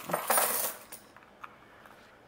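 A small handful of loose coins jingling and clattering together for under a second as they are tipped out, then a few faint clinks.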